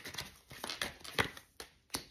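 Tarot cards being handled and dealt onto a table: an irregular string of short card flicks and taps, the sharpest about a second in.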